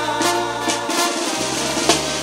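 Live banda music: sustained wind-instrument chords over a drum fill of snare and bass-drum hits. The low bass line drops out briefly midway, then comes back at a new pitch.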